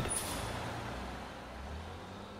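Low rumble of a heavy industrial vehicle's engine, fading steadily as it moves away, with a faint high whistle briefly near the start.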